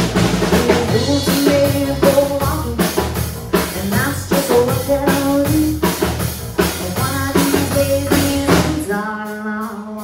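Live band playing a country-rock song, with a full drum kit keeping a steady beat under bass and guitar and a woman singing into a handheld microphone. Near the end the drums and bass drop out briefly, leaving the voice more exposed.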